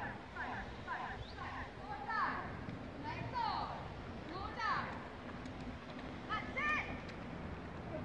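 Distant voices: short, high-pitched calls and shouts come one after another, over a faint steady low hum.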